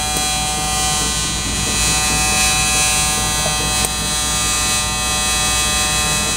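TIG welding arc buzzing steadily as a seam is welded on 18-gauge sheet metal.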